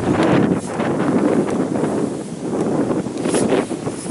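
Wind buffeting a handheld camera's microphone, with a few short crackles of rustling as the camera moves low over grass and fallen leaves.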